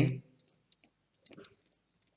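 Faint, irregular clicks and light taps from handwriting being put onto a digital writing tablet, heard after a spoken word ends.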